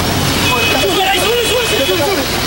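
Raised voices of people in the street over steady street noise, with a brief high steady tone near the start of the voices.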